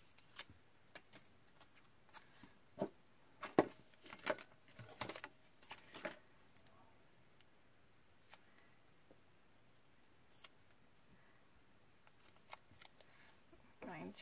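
Quiet handling sounds of paper and foam adhesive pop dots on a craft table: scattered light clicks, taps and crinkles as backing is peeled and pieces are pressed down, busiest between about three and six seconds in.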